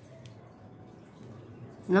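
Quiet, soft sound of a sheet of office paper being pressed and creased flat by hand, over a faint steady low hum. A woman's voice starts right at the end.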